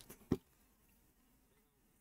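A single short click about a third of a second in, then near silence: room tone.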